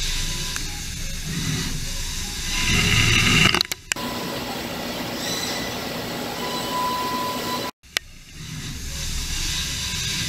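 DMG DMU 65 monoBlock 5-axis CNC mill roughing aluminum with a 2-inch 5-flute Sandvik cutter at 12,000 RPM. The spindle and cutting noise are mixed with the hiss of flood coolant spraying. The sound breaks off abruptly about 4 s in, changes to a steadier texture, and cuts out again near 8 s before the machining noise returns.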